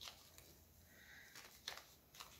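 Near silence, with a few faint clicks and rustles from a plastic glitter bag's stiff zip seal being worked at by hand.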